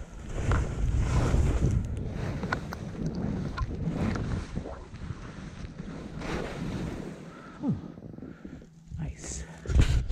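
Wind buffeting an action camera's microphone during a downhill ski run, with skis sliding over snow, rising and falling through the turns. Near the end, a loud knock as a hand touches the camera.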